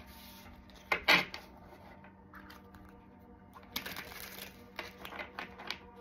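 A tarot deck being shuffled by hand: crisp flicks and taps of card edges, with a short burst of clicks about a second in and a longer, busier run starting about four seconds in. Faint background music underneath.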